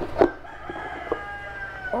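A sharp knock just after the start as the cardboard puzzle box's lid comes off, then a rooster crowing in the background: one long call of about a second and a half that drops in pitch at the end.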